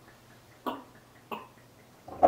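A person gulping from a bottle: two short swallows, about two-thirds of a second apart.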